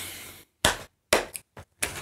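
Several short, sharp smacks, roughly half a second apart, after a hummed "hmm" fades out.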